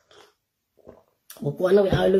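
A woman drinking from a mug: two faint swallows, then she begins speaking again about a second and a half in.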